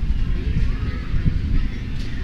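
Outdoor background sound: a steady low rumble on the microphone with faint, distant voices.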